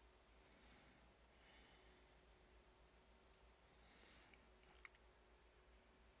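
Near silence with faint, soft scratchy rubbing of a paintbrush mixing paint on a palette, and one small click near the end.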